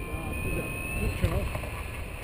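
Wind rushing over the camera microphone during paraglider flight, with a low steady rumble and a few brief spoken sounds from a man's voice.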